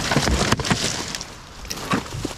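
Dry leaves, twigs and brush rustling and crackling close to the microphone as they are pushed and handled, with many small snaps. It is busiest in the first second and quieter after.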